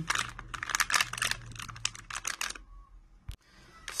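A metallised anti-static plastic bag being torn open and crinkled, a dense run of crackles over the first two and a half seconds. It goes quieter after that, with a single sharp click a little past three seconds.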